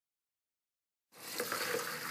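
Silence, then about a second in, a steady hiss of water running and splashing into plastic containers.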